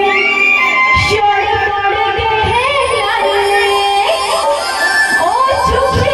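Live Pahadi folk song played loud through a PA system: a woman singing a melody over amplified band accompaniment.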